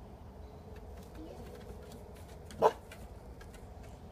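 A dog gives a single short, loud bark a little past halfway through.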